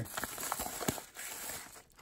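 A few light clicks and taps of hard plastic card cases being handled, in the first second or so, then quieter handling.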